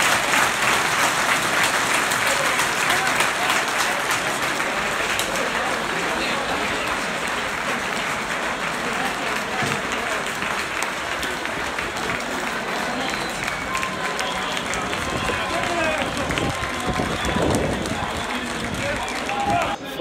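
Football crowd in a stand applauding, many hands clapping with voices mixed in, a steady dense wash of sound.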